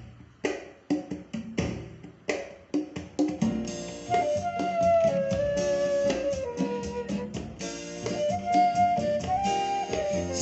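Recorded music played back from a Denon DN-S1000 DJ CD player. It opens with separate plucked and struck hits, and about four seconds in a held melody line comes in over a steady beat. The melody slides slowly lower in pitch and then returns as the player's pitch fader is pulled down and brought back.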